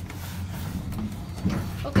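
An elevator car's floor button is pressed with a sharp click, followed by a low steady hum inside the car.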